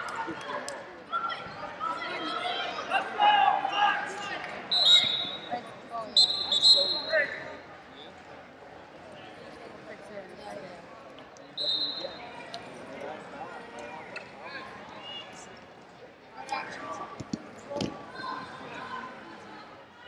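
Wrestling shoes giving short, high squeaks on a wrestling mat, with dull thuds of bodies and feet hitting the mat as two wrestlers scramble. Voices shout over it near the start.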